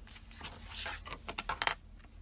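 Paper and card handled on a cutting mat: a brief scraping slide, then a quick run of light clicks and taps.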